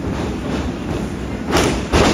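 A wrestler is taken down onto the wrestling ring. There is a burst of noise about one and a half seconds in, then a sharp, loud thud of the ring's mat and boards right at the end.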